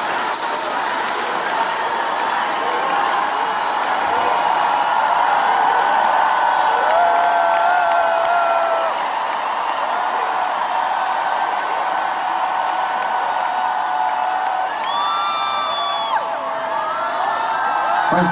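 A large concert crowd cheering and whooping, with many long held shouts and chant-like voices blending together. A sharper, higher held shout stands out near the end.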